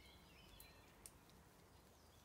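Near silence in a forest: a few faint, high bird chirps near the start and a soft click about a second in.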